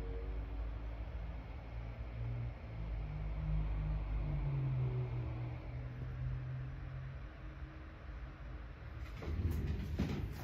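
Steady, faint airflow hiss from a 16-inch MacBook Pro M1 Max's cooling fans spinning at about 2,400 RPM, barely audible under the louder low rumble of cars passing outside, which swells and fades. A few sharp handling noises come near the end.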